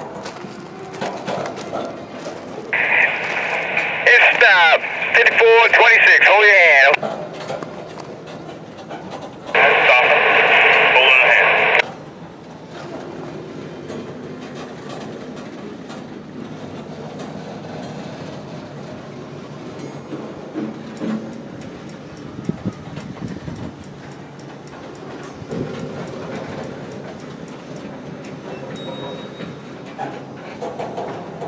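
Freight train cars rolling slowly past on the rails with light clicks and clanks. A two-way radio breaks in twice with short transmissions, at about 3 to 7 seconds and again at about 10 to 12 seconds, louder than the train.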